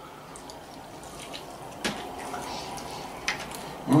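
Quiet chewing and mouth sounds of people eating chicken tenders dipped in sauce, with two short sharp clicks, one just before halfway and one near the end.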